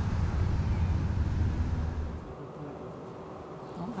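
Steady low rumble in the soundtrack of a TV drama excerpt, cutting off a little over two seconds in and leaving quiet room tone.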